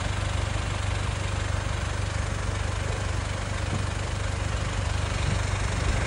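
Car engine idling steadily, a constant low hum.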